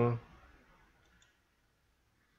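A spoken word trails off at the start, then near silence with one faint computer mouse click about a second in.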